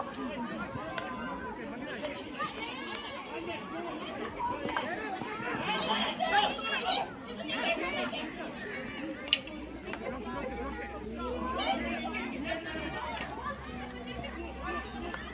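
Overlapping voices of spectators and young players chattering and calling out around an outdoor field hockey game, with one sharp crack about nine seconds in.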